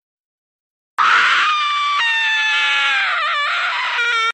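Silence for about a second, then a long, high-pitched scream that sinks slightly in pitch, wavers near the end and cuts off abruptly.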